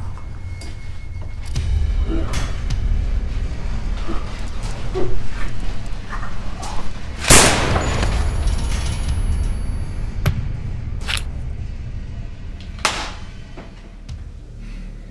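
Dramatic film soundtrack: a steady low rumbling drone with scattered hits, one big boom with a long tail about seven seconds in and three short, sharp hits in the last few seconds.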